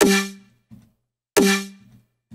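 Snare drum beat played through Ableton's Corpus resonator in String mode: two snare hits, the second about two-thirds of the way in, each ringing out as a pitched, string-like tone that dies away within half a second, with quieter short low hits in between.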